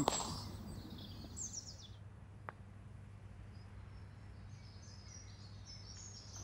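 Faint outdoor ambience with a low steady background hum and a few faint, high bird chirps, plus a single small click about two and a half seconds in.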